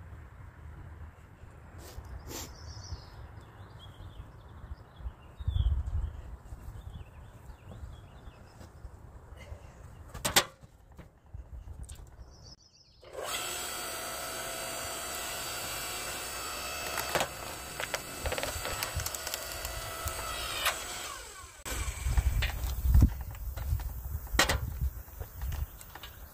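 Electric log splitter's motor starts about halfway through and runs with a steady hum for about eight seconds while a log is forced through the wedge; its pitch sags just before it stops. Split wood pieces then knock and clatter loudly on the splitter.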